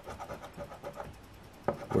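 Scratch-off lottery ticket being scratched with a round scratching tool: faint, quickly repeated rasping strokes, with a sharper click near the end.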